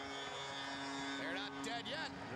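Arena sound just after a goal: a long, steady held tone over general crowd noise, with a few voices coming in near the end.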